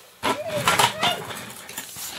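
Bubble wrap and plastic packaging rustling and crinkling as it is handled, a dense run of short crackles beginning just after the start.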